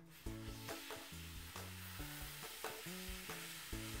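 A long, sustained voiceless /f/ sound, a steady breathy hiss that fades near the end, modelled as the target speech sound over soft acoustic guitar music.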